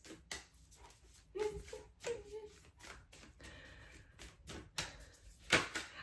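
A deck of cards shuffled by hand: irregular soft clicks and slaps of cards, a little louder near the end, with a couple of faint murmurs from a woman's voice.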